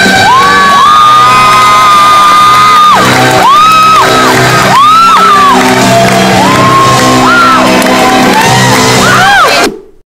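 A woman singing live into a microphone over a backing track, amplified through a PA. She belts a long held high note, then several shorter notes that swoop up and down, with no crack in her voice. The sound cuts off suddenly just before the end.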